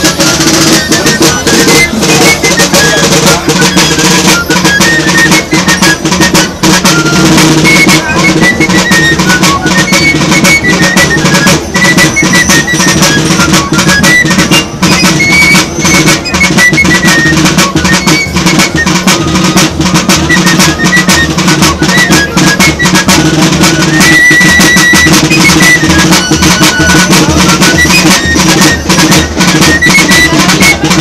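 A small street band, a clarinet with a snare-type drum, playing a lively parade tune. The high melody runs over a steady, fast drum beat.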